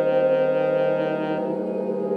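Saxophone holding one long low note; about one and a half seconds in its tone turns darker as the upper overtones drop away.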